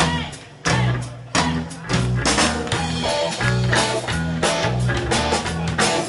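Live heavy-metal band playing amplified: electric guitar, bass guitar and drum kit. A few stop-start band hits in the first second and a half, then a steady driving riff.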